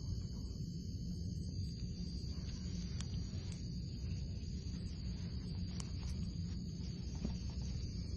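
Low steady background hum with a thin high whine, broken by two or three faint clicks.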